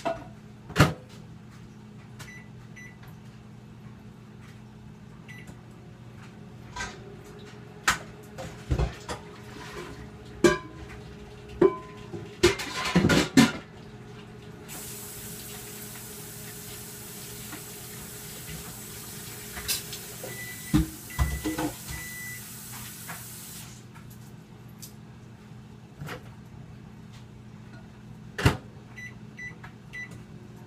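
Clatter and knocks of dishes and the microwave door, then a countertop microwave oven running with a steady hum for about nine seconds while it softens cut-up butter, stopping abruptly, with a few short beeps.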